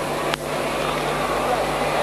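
Cricket bat hitting the ball once, a sharp crack about a third of a second in, over the steady murmur of a stadium crowd.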